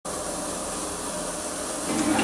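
A steady hiss of background noise that comes in abruptly and holds level, with no distinct events in it.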